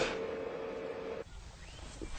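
A faint steady tone that cuts off suddenly a little over a second in, leaving faint background noise.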